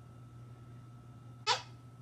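Quiet room tone with a steady low hum, broken about three quarters of the way in by one very short, high vocal squeak.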